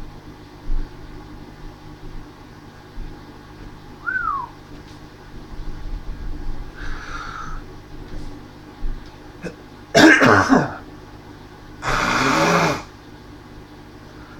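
A man clearing his throat and coughing: two loud, harsh bursts near the end, after a few faint small sounds.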